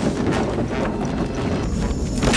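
Film soundtrack: music over a rumbling, windy whoosh, growing brighter and fuller near the end as it builds toward a crash.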